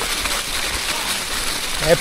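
Steady rustling hiss of mountain-bike tyres rolling fast over a carpet of dry fallen leaves.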